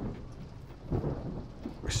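Thunder rumbling over steady rain, swelling about a second in.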